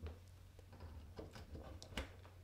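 A few faint clicks and light handling noise from a USB-C OTG adapter, carrying a USB flash drive, being plugged into a tablet's USB-C port, with one small click at the start and another at the end.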